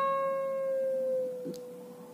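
A single note on a steel-string acoustic guitar ringing out and fading slowly, its pitch pushed slightly upward at the start by a string bend on the second string.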